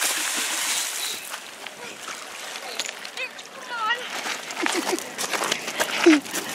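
A hooked fish splashing at the water's surface as it is reeled in, loudest in about the first second and then dropping to lighter sloshing.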